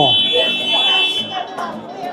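A steady, high-pitched electronic buzzer tone that holds one pitch and cuts off about a second and a half in, under faint background sounds.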